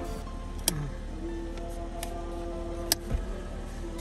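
Background music with long held notes, over which two sharp clicks sound, about a second in and near three seconds, as the portable air compressor's plug is pushed into the car's 12-volt power socket.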